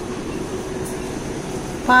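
Steady background hum and hiss of a shop interior, with a faint even tone underneath; a person's voice starts loudly near the end.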